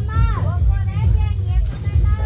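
Voices shouting over loud background music with a heavy bass.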